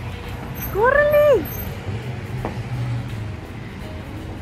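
One drawn-out high-pitched cry about a second in, rising, held and then falling, lasting under a second, over a steady low rumble.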